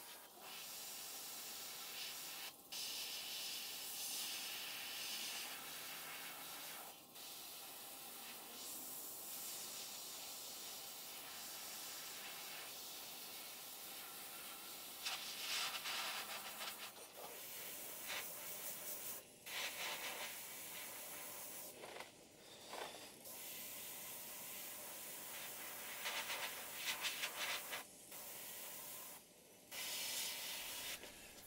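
Airbrush spraying paint: a steady hiss of air, broken by several short pauses where the trigger is let off, with a few louder passes.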